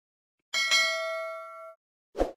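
Notification-bell 'ding' sound effect from a subscribe-button animation: a bright bell chime with a second strike right after, ringing for about a second and then cut off abruptly.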